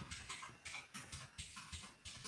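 Computer keyboard typing: faint, quick key clicks, about five keystrokes a second, as a word is typed.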